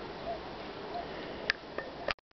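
Honeybee colony humming steadily on an open brood frame, with a sharp click about one and a half seconds in.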